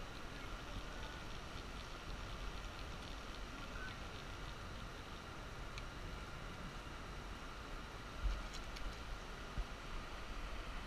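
Steady rush of a shallow, rocky river running over riffles, with low wind rumble on the microphone. A couple of brief bumps come near the end.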